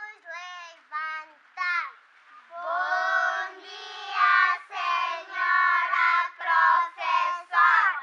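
A group of young children singing a greeting song to their teacher: a few short sung phrases, then a longer continuous passage from about two and a half seconds in.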